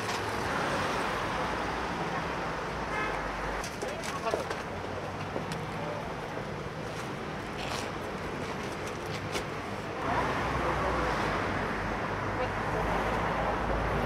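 Steady street traffic noise with a low hum, growing a little louder from about two-thirds of the way in, with faint voices and the odd click over it.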